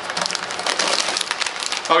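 A plastic bag of potato chips crinkling and crackling as it is handled and lifted out of the box: a dense, continuous run of rapid crackles.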